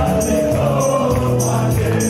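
A live wedding band playing an upbeat Romanian light-music dance tune: a steady beat with regular high cymbal strokes under a long held melody line that bends in pitch.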